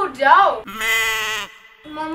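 A girl's short whining moan, then a sheep bleating once for just under a second.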